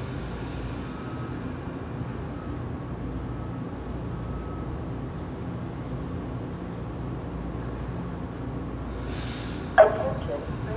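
Steady low rumble of an approaching Amtrak train led by an ACS-64 electric locomotive, still some distance off, over station background noise. Just before the end a loud station public-address announcement starts abruptly.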